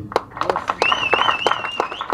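Scattered hand clapping from a small crowd, with a wavering high whistle joining about a second in.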